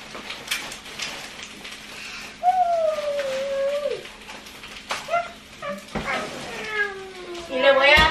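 A woman's long, drawn-out calls, calling out to someone in the house: one long call that slides down in pitch about two and a half seconds in, short calls near five seconds, and louder falling calls near the end. Light rustling and clicks of plastic bags come before them.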